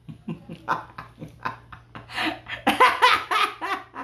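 A man laughing. Short, breathy chuckles at first give way to louder, drawn-out laughter about two seconds in.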